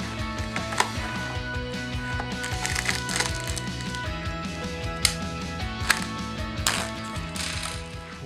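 Cardboard door of an advent calendar being pushed open and a small plastic bag crinkling as it is opened, with a few sharp clicks, over background music with a steady beat.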